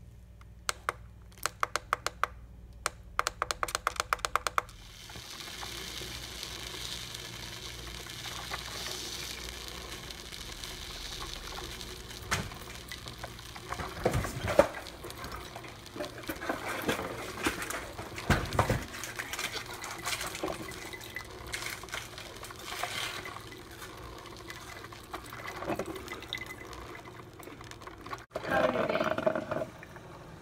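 A five-cup drip coffee maker: a quick run of clicks from its controls in the first few seconds, then the machine brewing, a steady hiss with gurgling and sputtering as it heats the water and pushes it through into the glass carafe.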